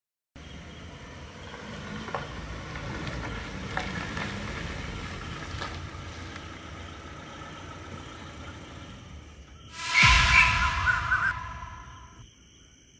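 Heavy truck engine running steadily. About ten seconds in there is a loud burst of noise with a steady tone in it, which cuts off suddenly.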